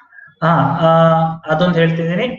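A man's voice drawing out two long vowel sounds, each held at one steady pitch, the first about half a second in and the second near the end.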